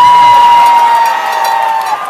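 A crowd cheering as a noisemaker close by sounds one loud, high, held note that sags slightly in pitch and stops just before the end.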